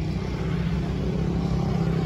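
A steady low mechanical hum, even in level throughout.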